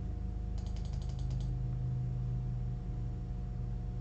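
Computer mouse button clicked rapidly, about ten quick clicks in under a second, over a steady low hum.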